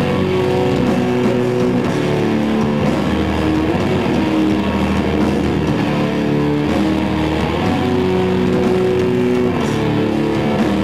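Metalcore band playing live: heavy electric guitars and bass guitar, loud and steady, with long held guitar notes.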